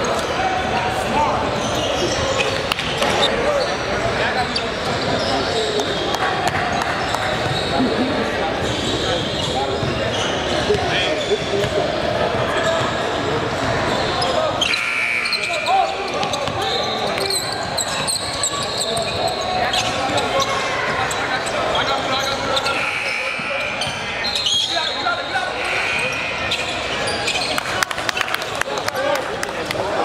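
Basketball game in a large gym: steady chatter from players and spectators echoing in the hall, with a basketball bouncing on the hardwood floor.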